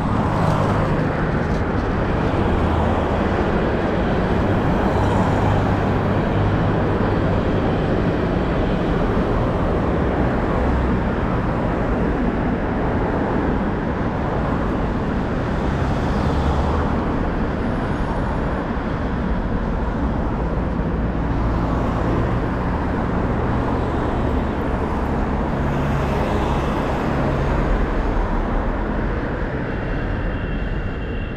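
Steady road traffic noise from cars driving along a multi-lane road, a continuous rumble with a few vehicles swelling louder as they pass.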